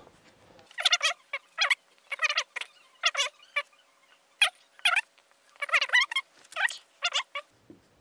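A man's voice fast-forwarded into rapid, high-pitched chipmunk-like chatter, in short bursts with brief gaps.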